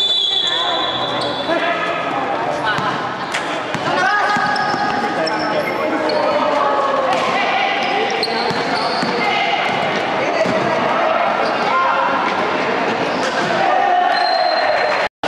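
Basketball game sounds: a ball bouncing on the court amid players' voices and chatter.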